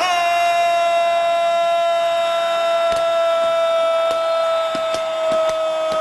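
A soldier's long, held parade shout: one steady sustained note that starts suddenly and sags slightly in pitch, with a few faint knocks in the background.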